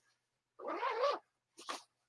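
A soft, brief wavering cry, rising and falling in pitch for about half a second, followed near the end by a short rustle of nylon fabric being handled.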